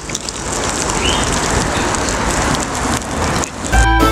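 Marinated chicken wings sizzling on a charcoal grill, a steady hiss.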